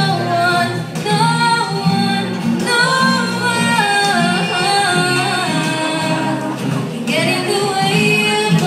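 Two female singers singing a song, accompanied by an ensemble of acoustic guitars.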